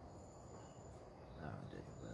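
Faint, steady high-pitched trill of crickets.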